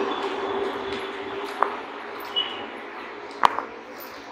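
Two sharp metallic clinks over steady room noise and a faint hum, one about a second and a half in and a louder one near the end: small screws and TV wall-mount hardware being handled.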